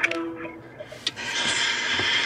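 FaceTime video call on a smartphone: a held electronic call tone comes from the phone's speaker for about the first second. Then the call connects and a steady hiss from the far end plays through the small speaker.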